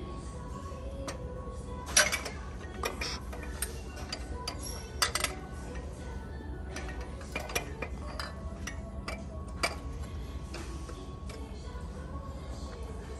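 Ceramic mugs clinking against one another and their metal pegboard hooks as they are handled, a scattering of sharp clinks, the loudest about two seconds in and again about five seconds in.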